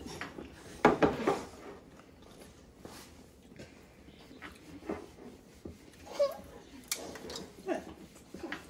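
A child's short laugh about a second in, then a quiet room with scattered small knocks and clicks at the table.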